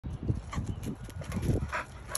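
A bull terrier making short, irregular noises close by.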